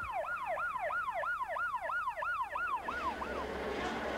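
Ambulance siren in a fast yelp, its pitch sweeping up and down about three times a second. It cuts off about three and a half seconds in, giving way to a steady rush of noise.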